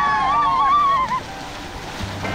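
A drawn-out, wavering voice holds a note for about the first second, then breaks off. Softer splashing water follows.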